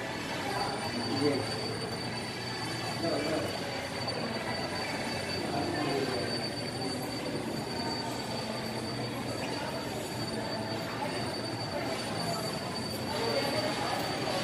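Shopping mall ambience: a murmur of many voices echoing in a large atrium, with a thin, steady high-pitched whine that starts about half a second in and fades near the end.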